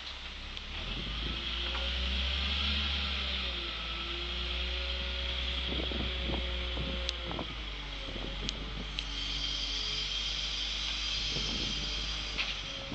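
Volvo wheel loader's diesel engine working under load as it drives up and lifts its full bucket, the pitch rising and falling with the throttle over a deep steady rumble. A few sharp knocks come about halfway through.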